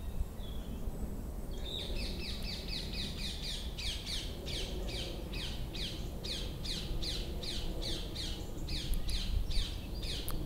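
A songbird singing a long run of repeated, downward-sweeping whistled notes, about three a second, starting a second or two in and going on steadily.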